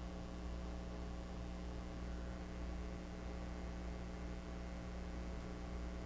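Steady low electrical hum with a faint even hiss, and no other sound.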